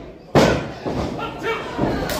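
A single loud slam on the wrestling ring about a third of a second in, from a wrestler's impact on the mat, followed by voices from the crowd.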